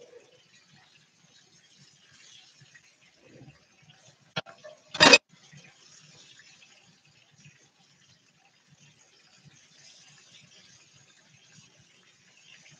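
A sharp click, then a brief loud clatter about five seconds in, as kitchen items are handled, over a faint steady hiss.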